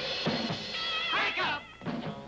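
Surf rock instrumental: a drum kit fill of quick strikes, then about a second in a wavering high note slides downward, with another drum hit near the end.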